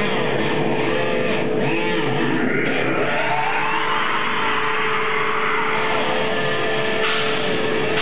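Black metal band playing live: distorted electric guitar holding one steady droning note under noisy, sweeping pitch glides, with little bass or drumming until the full riff returns just after.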